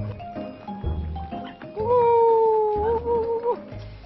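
A rooster crowing: one long, steady held call of about two seconds, starting about two seconds in, over background music.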